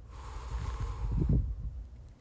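A long, slow breath out through the mouth, a steady breathy hiss lasting nearly two seconds over a low rumble, then cutting off.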